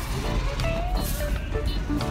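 Background music, a song with a sung melody, over a steady low rumble.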